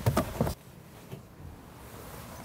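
A few short rustles and bumps of a person shifting across and climbing out of a car's rear seat, over within about half a second, followed by faint steady outdoor background.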